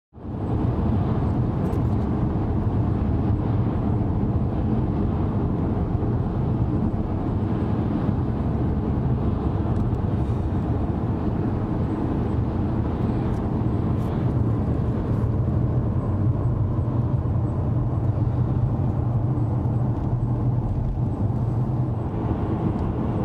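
Steady low road and engine noise of a moving car, heard from inside the cabin.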